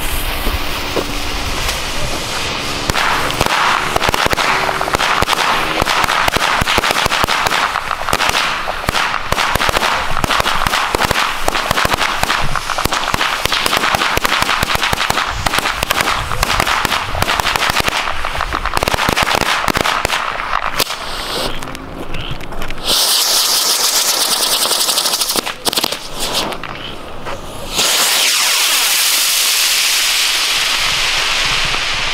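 A string of about a hundred small firecrackers going off in dense, rapid crackling bangs for about twenty seconds. Then the canastilla, a spinning firework fed by the same fuse, lights with a loud steady hiss. The hiss drops back for a moment and comes back strongly near the end as it flies up.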